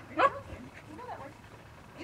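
A dog barks once, loudly, about a quarter second in, with a fainter, shorter call about a second later.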